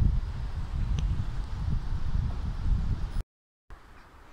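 Wind buffeting the microphone, an uneven low rumble. About three seconds in it drops out to a moment of dead silence, then comes back much fainter.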